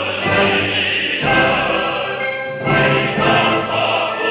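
Operatic tenor singing full voice with orchestra and chorus, held notes changing pitch twice.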